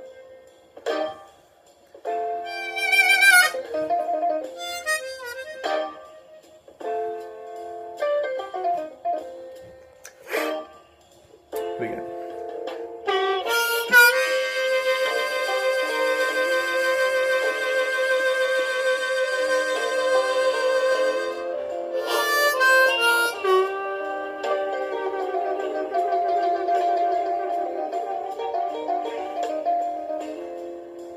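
B flat diatonic harmonica played solo in third position, a slow melody in short phrases with pauses between them. Around the middle a chord is held for about eight seconds, and near the end the notes waver in a tremolo.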